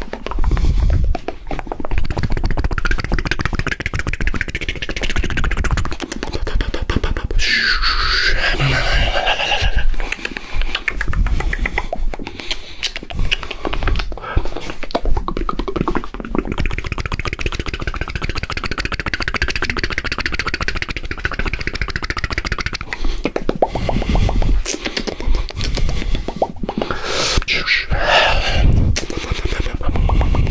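Fast, nonstop mouth sounds made right up against a binaural microphone: rapid clicks, pops and smacks, with two short voiced stretches, one about a third of the way in and one near the end.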